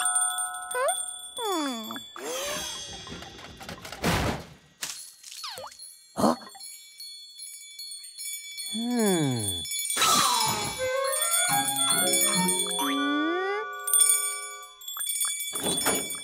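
Cartoon soundtrack: background music with sound effects, several falling pitch glides and a couple of sudden whooshes or hits, with light bell jingles.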